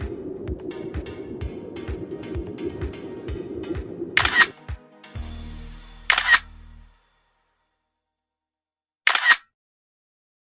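Background music with a steady beat that stops about four and a half seconds in. Three camera-shutter sound effects stand out as the loudest sounds, each a quick double click: one as the music ends, one about two seconds later, and one near the end, with silence between.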